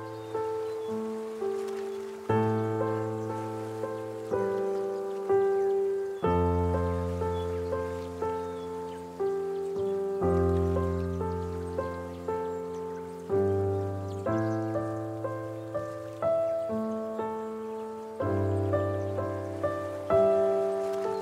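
Solo piano playing a slow, calm chord progression: a new chord struck every two seconds or so and left to ring and fade, one held for about four seconds in the middle, over a faint steady hiss.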